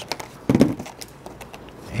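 Light clicks and taps of metal bobby pins being taken off a candle mold and set down on a table: a louder knock about half a second in, then a few faint ticks.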